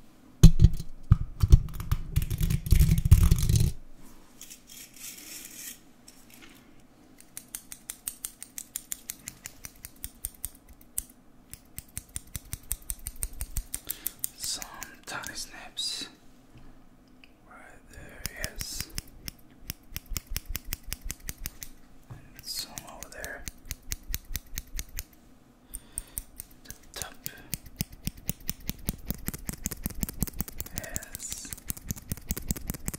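Scissors snipping close to the microphone in long runs of quick, crisp snips, several a second. The first few seconds hold a loud, low rustling handling noise.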